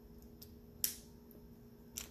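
Two short, sharp clicks about a second apart as a metal watch band piece is handled and fitted onto the watch case, over a faint steady hum.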